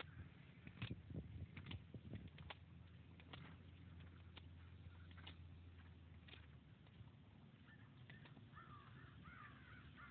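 Near silence with faint bird calls outdoors, a run of chirps near the end, over scattered faint clicks.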